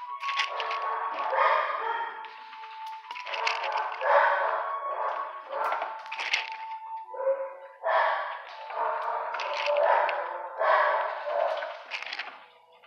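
Several shelter dogs barking over one another in a kennel block, in repeated overlapping bursts.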